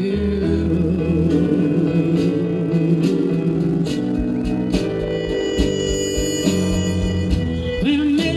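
Live band music: a keyboard holding a low bass line and chords, a drum kit with sparse strikes, and a wavering lead melody on top.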